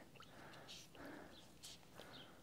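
Near silence, with faint soft squelches of wet wool roving being pressed down into dye water in a saucepan by a gloved hand.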